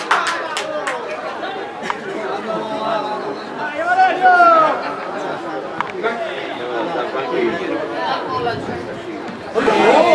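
Chatter of players' and spectators' voices during a football match, with a loud drawn-out shout about four seconds in and another loud call near the end.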